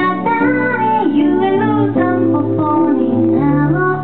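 A woman singing with her own piano accompaniment, played on a stage keyboard: a moving sung melody over held piano chords whose bass notes change a few times.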